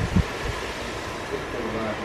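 A dull low thump about a fifth of a second in, then a weaker one shortly after, over a steady wind-like hiss.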